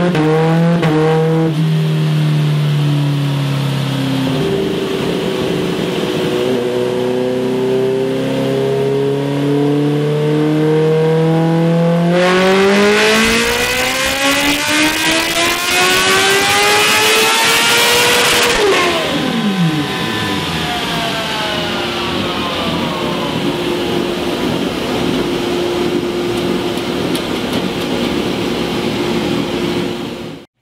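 A Kawasaki Ninja H2's supercharged inline-four runs under load on a motorcycle dyno roller, with a very loud exhaust. It holds a steady pitch, then climbs slowly, then pulls hard for about six seconds with the revs rising steeply. The throttle is then shut, the revs fall fast, and it settles to a steady lower hum.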